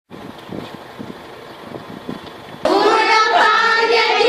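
A group of schoolchildren singing together, cutting in suddenly and loudly about two-thirds of the way through; before that, only faint speech.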